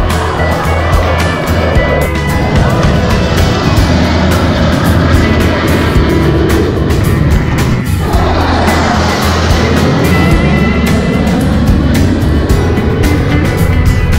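Music with a steady beat over the loud, rushing noise of a formation of fighter jets flying overhead. The jet noise sweeps down and back up in pitch as they pass, a little past halfway.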